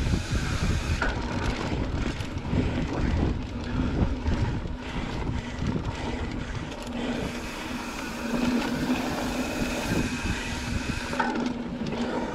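Mountain bike rolling fast along a dirt singletrack: tyres on the dirt and the bike rattling over roots and bumps, with a continuous rumble and irregular knocks.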